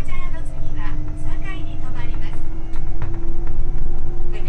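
Cabin running noise of a Nankai 8000/12000-series electric train under way: a steady low rumble with a thin motor hum that slowly rises in pitch as the train gathers speed. A voice speaks over it.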